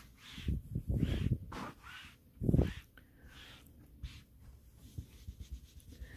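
A hand brushing across thick-pile velvet, realigning the crushed pile: several soft rubbing strokes in the first second and a half and one more about two and a half seconds in, then only faint rustling.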